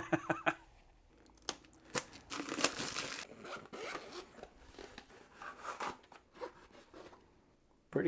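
The zipper of a zippered hard-shell carrying case being pulled open, a scratchy rasp in uneven strokes that starts about one and a half seconds in and is loudest a second later.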